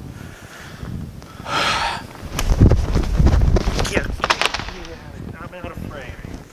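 Footsteps and shuffling on a hardwood floor as two people step and move through a sword drill. The heavy thuds come in the middle, along with a few sharp knocks.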